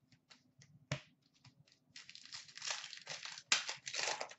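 A few light clicks and a tap as trading cards are handled, then a hockey card pack's foil wrapper crinkling as it is torn open, in two spells, the second starting sharply near the end.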